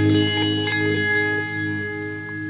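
Fender Stratocaster electric guitar playing a blues phrase: notes struck at the start ring out and slowly fade, with a couple more notes picked over them within the first second.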